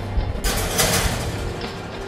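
A pizza on a marble slab slid into an oven, a sliding scrape lasting about a second, over steady background music.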